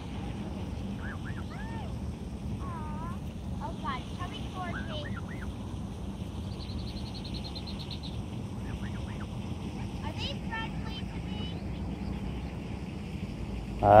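Canada geese, an adult and its gosling, giving scattered soft short calls at close range. The calls come in two spells, early on and again past the middle, over a steady low rumble.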